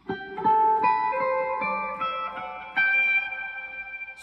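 Electric guitar playing clean single notes of a major scale, about eight picked notes stepping upward, each left to ring into the next.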